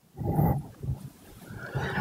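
A man clearing his throat close to a microphone: a short rough rasp about half a second in, then fainter breathy noise near the end.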